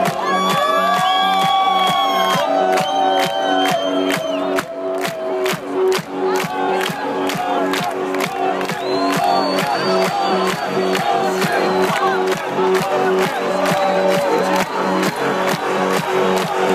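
Electronic dance music played loud through a live DJ set's sound system, with a steady kick drum at about two beats a second under held synth chords. A large crowd is cheering over it.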